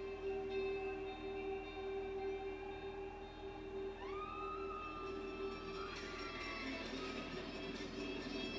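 Film score music played through cinema speakers: sustained held notes, with a higher note sliding up about four seconds in and then held.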